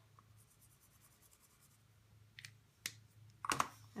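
A quiet stretch, then two light clicks a bit past halfway and a brief, louder handling sound near the end, as a felt-tip marker and a sheet of watercolour paper are handled on a craft mat.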